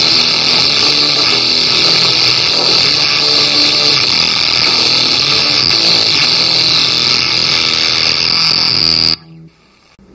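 Fuzz pedal with its feedback loop engaged, self-oscillating into a loud, harsh, steady noise with a high whine on top; it cuts off suddenly about nine seconds in.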